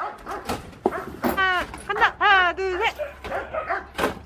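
A dog with its head thrown back giving a run of short, high, yelping howls. Each call falls in pitch, and the loudest come in the middle.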